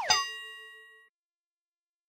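A single bell-like ding sound effect, struck once and fading out over about a second.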